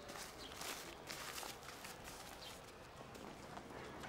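Faint crinkling of a brown paper bag being folded shut around sesame balls, a few short rustles in the first second and a half.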